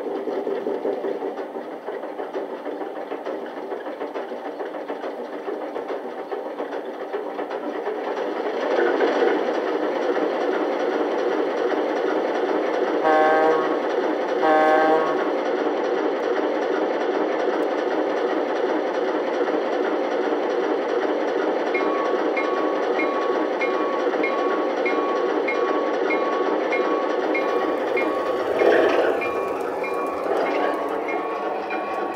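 MTH O gauge Alco RS-3 model diesel locomotive's onboard sound system playing diesel engine sounds, idling and then revving up about eight seconds in. Two short horn blasts sound near the middle, then the bell rings steadily, about two strokes a second, as the locomotive pulls away.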